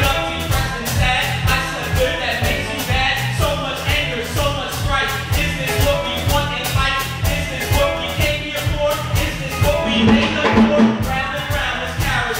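Live band music with a steady, even drum beat over bass, with pitched instruments or a voice through the microphone on top.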